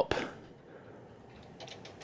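Faint handling noises: a few light ticks and rustles from a plastic humidifier water tank being lifted and tipped over by hand.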